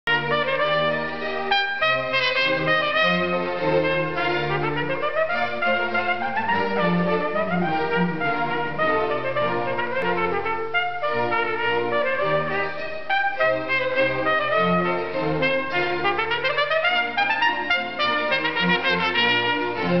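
Trumpet playing a fast Baroque solo line with string accompaniment: quick runs of notes, with a rising scale about five seconds in and again about sixteen seconds in, over sustained low string notes.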